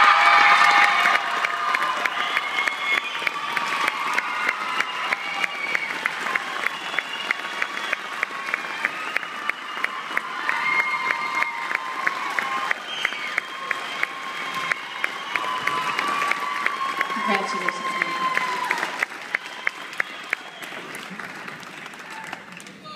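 Audience applauding and cheering an award announcement, with a loud burst of cheers at the start and whoops over steady clapping. Sharp claps close by keep a steady beat before the applause dies down near the end.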